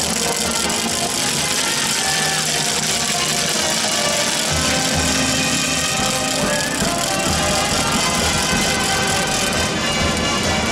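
Marinera norteña dance music played loudly, with a crowd shouting and cheering over it.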